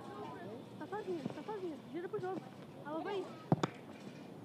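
Footballers' voices calling out across the pitch, picked up by the field microphone, with one sharp thump about three and a half seconds in.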